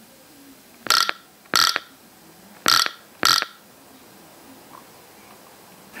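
TA-1/PT sound-powered field telephone signalling an incoming call: four short buzzes in two pairs, picked up right at the handset.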